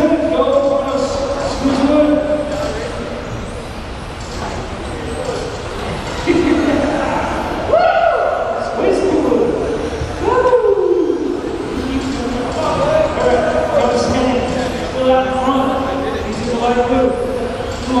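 A race announcer's voice over a PA, echoing in a gymnasium, with electric RC touring cars running on the track underneath.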